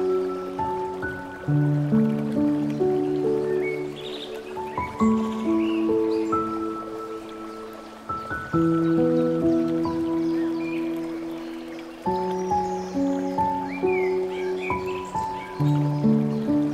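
Slow, gentle solo piano music: soft sustained chords under a simple melody, with a new low chord entering every three to four seconds.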